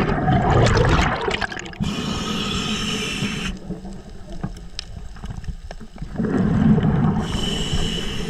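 Underwater breathing through a diver's regulator: a rumble of exhaled bubbles, then a hiss of inhalation, twice. A few faint clicks come in the quieter stretch between breaths.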